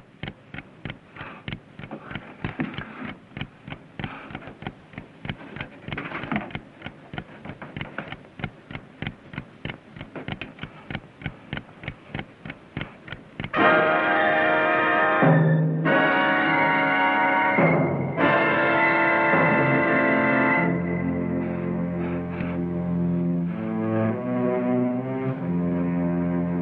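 Steady ticking of a wind-up alarm-clock timer on a dynamite bomb. About halfway through, loud orchestral music with held string chords cuts in suddenly over it.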